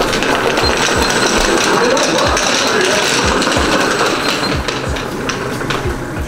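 Hoverboard go-kart driving across a tiled floor: a steady rolling rattle and rumble from its small wheels on the tile, with a few light knocks.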